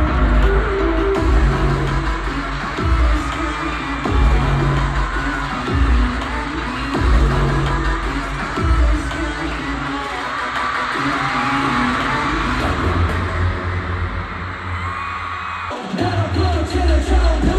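Loud pop concert music played through an arena sound system, with heavy bass hits recurring every second or two, mixed with a cheering, screaming crowd. The music breaks off abruptly near the end.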